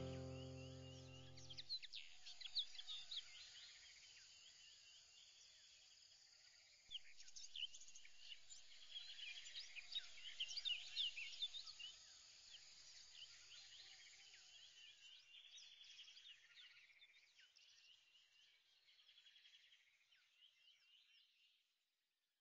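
Background music fades out in the first two seconds, leaving faint chirping of many birds that slowly fades away near the end.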